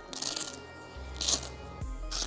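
Hook-and-loop (velcro) fastening strip on a fabric soft-top window panel being pulled apart by hand: two short ripping sounds, one at the start and one just over a second in.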